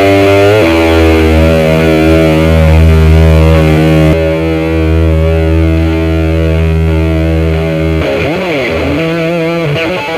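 Distorted electric guitar played blues-style. A low note is held and sustained for about seven seconds. Near the end the pitch swoops down and back up.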